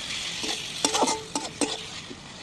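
Sliced onions and garlic paste sizzling in hot oil in a steel kadai while a metal spatula stirs them. The spatula strikes and scrapes the pan about five times, each strike ringing briefly.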